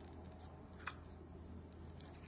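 Faint handling of a metal spoon on a ceramic plate, with one sharp click about a second in as the spoon presses into a syrup-soaked torreja, over a low steady hum.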